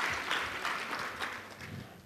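Audience applauding, the clapping thinning out and fading away toward the end.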